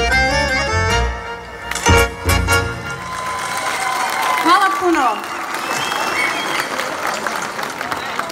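Live band music, with accordion and violin-like lines over bass, ending on two final struck chords. It is followed by crowd noise: voices, a shout and scattered clapping.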